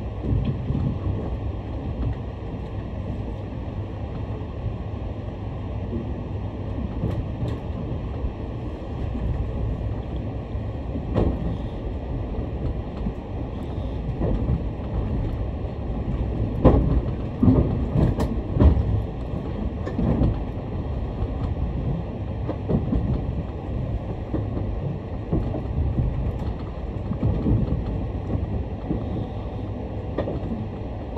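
Inside the cabin of an E751-series electric express train pulling out of a station: a steady low rumble of wheels and running gear. A cluster of sharp clacks comes from the wheels on the track a little past halfway.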